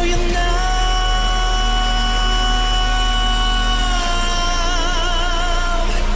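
A male pop vocalist sings live and holds one long high note over the backing track. The note is steady at first, then sways in vibrato for about the last two seconds.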